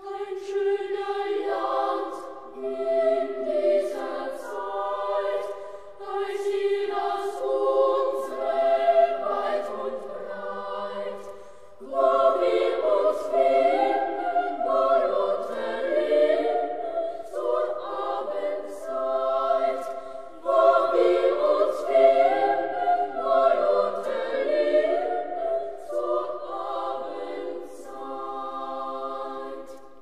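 A choir singing a song in harmony as background music, in phrases of a few seconds, with fuller, louder entries about twelve seconds in and again near twenty-one seconds.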